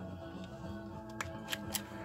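Faint background music with a few light, sharp metallic clicks from a stainless steel Charter Arms Pitbull revolver being handled.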